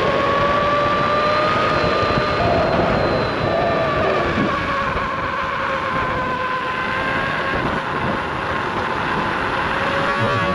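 Veteran Lynx electric unicycle's hub motor whining steadily while riding, its pitch rising slightly and then easing down over several seconds. Underneath runs a steady rush of rolling noise.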